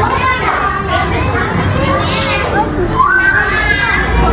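Many children's voices chattering and calling out over one another, with no single clear speaker.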